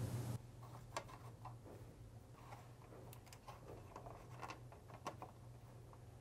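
Faint, scattered light clicks and rustles of wiring being pressed into plastic harness retainer clips.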